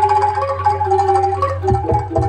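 Live Javanese gamelan accompaniment for jaranan: metallophones play a steady melody of held, ringing notes over a continuous low hum, with a couple of drum strokes near the end.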